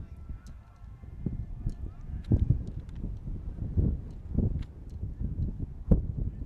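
Baseball field ambience of faint distant voices and low rumble, with a single sharp pop near the end as the pitch smacks into the catcher's mitt.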